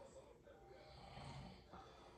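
Near silence, with faint breathing close to the microphone.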